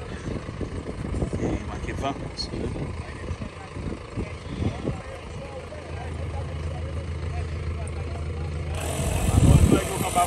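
Portable electric tyre inflator running steadily, pumping air into a trailer tyre through a hose on the valve, a steady low hum. A louder low rumble near the end.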